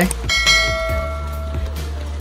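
A single bright bell chime, struck once shortly after the start and ringing away over about a second and a half, the kind of notification-bell sound effect that goes with a subscribe-button animation. A steady low hum runs underneath.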